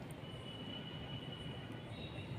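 Faint, soft hiss of fine artificial-snow granules pouring from a pouch onto a wooden tabletop, with a thin steady high whine underneath.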